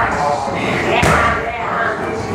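A strike landing on Muay Thai pads: one sharp smack about a second in, with voices around it.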